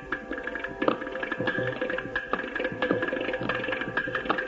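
Carnatic hand-drum percussion played in rapid, irregular strokes over a steady drone, with no singing heard.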